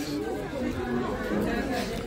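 Indistinct chatter of several people talking in the background, with no single voice standing out.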